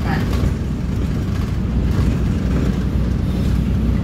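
Steady low rumble of a city bus's engine and tyres, heard from inside the passenger cabin as it drives along.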